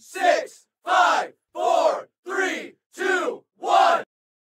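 Voices chanting: six loud, even shouts in a steady rhythm, each one rising and falling in pitch.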